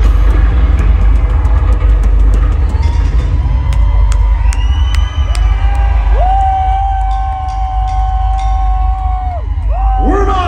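Live concert sound between songs: a deep, steady bass drone from the PA under crowd cheering and whoops, with a long held note in the second half that breaks off shortly before the end.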